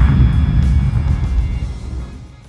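Low rumble of a large explosion dying away, with music underneath; both fade out toward the end.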